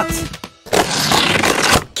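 The background music fades out, then a rush of even noise, like an edited transition sound effect, lasts about a second.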